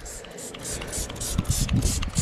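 Hand trigger spray bottle spritzing iron-remover onto a truck's body panel in quick repeated squirts, about four a second, each a short hiss.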